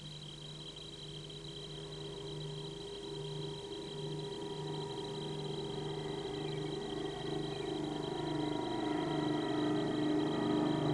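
Blimp's engines and propellers droning, growing steadily louder as it approaches overhead, with a slow regular throb.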